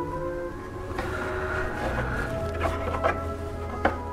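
Soft background music of held, sustained notes, with a few light wooden knocks as a turned cherry blank is set into the bed of a router fluting jig.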